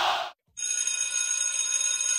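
Crowd noise cuts off, and about half a second later a steady, high, ringing electronic tone starts and holds. It is the opening sound of the dance routine's music track.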